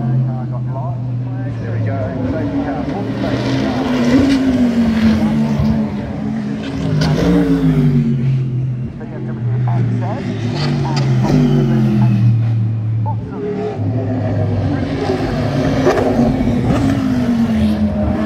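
Race car engines revving hard as cars go through the track's bends, loud throughout. The engine pitch climbs and then drops again several times.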